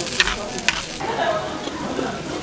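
Bibimbap rice sizzling against a hot stone bowl as a metal spoon stirs it, a steady hiss with two sharp clicks of the spoon on the stone, one a fifth of a second in and one near three-quarters of a second in.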